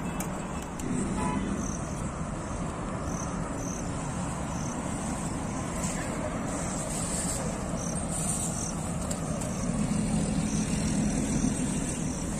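Steady outdoor background noise with a low rumble that swells near the end, and faint short high chirps now and then.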